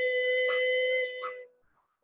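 A teenage girl's singing voice holding one long, steady note that cuts off about a second and a half in, followed by a brief silence.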